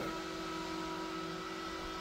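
A steady low background hum with a few faint steady tones running through it.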